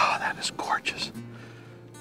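A man's breathy, whispered vocal sounds during the first second, then a low steady hum from him, with faint music underneath.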